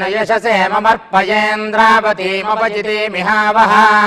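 Vedic pandits chanting a Sanskrit blessing mantra in a steady recitation, holding close to one low pitch with small rises and falls, with a short breath break about a second in.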